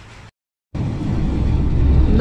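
Road noise of a car driving on a highway, heard from inside the cabin: a low rumble that cuts in after a brief dead silence about three quarters of a second in and grows louder.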